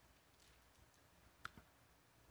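Near silence, with a faint click about one and a half seconds in and a softer one just after.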